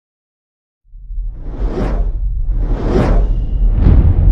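Cinematic logo-reveal sound effect: a deep low rumble comes in about a second in, with three swelling whooshes over it, the last one short and sharp near the end.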